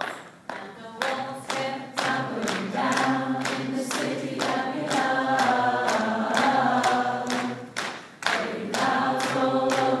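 A group of people singing together, with a steady beat struck by hands about two times a second under the voices; the singing drops out briefly about eight seconds in.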